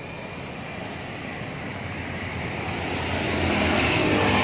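A road vehicle going by, its noise growing steadily louder as it approaches.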